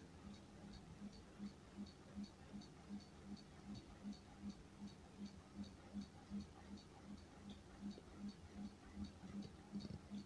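Faint, even ticking, about three ticks a second.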